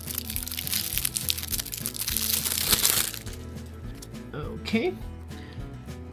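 Clear plastic shrink-wrap crackling and crinkling as it is peeled off a deck of cards, dense for about three seconds and then dying away, over steady background music.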